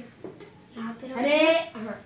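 A spoon clinks briefly against a dish about half a second in, followed by a child's short exclamation.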